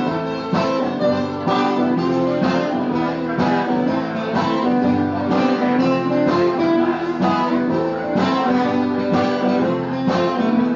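Two acoustic guitars played live, strummed in a steady rhythm with chords ringing, without vocals.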